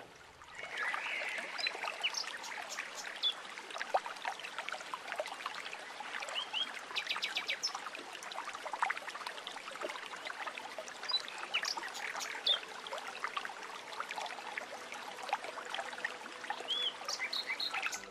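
Water running steadily from a brass fountain tap, with birds chirping on and off; the sound fades in just after the start.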